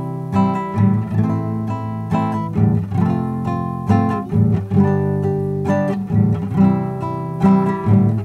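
Nylon-string classical guitar strummed in a steady rhythm, chords moving from F to A minor in the key of C major.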